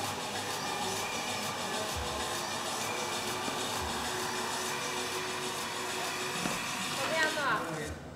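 Rowing machine's air flywheel whirring with each pull, over gym background music and voices. Near the end a falling whine comes as the flywheel spins down.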